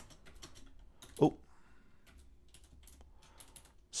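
Computer keyboard typing: irregular key clicks in short runs.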